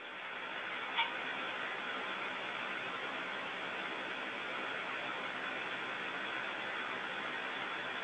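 Steady hiss of an open voice communications loop during a pause between calls, cut off sharply above the upper voice range as a radio channel is. A faint click comes about a second in.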